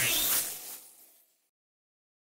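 A cartoon whoosh sound effect for a fast exit, a noisy swish that fades out within the first second. Complete silence follows.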